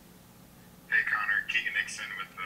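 About a second of quiet room tone, then a man's voice asking a question, thin and narrow-sounding as if through a telephone or conference-call line.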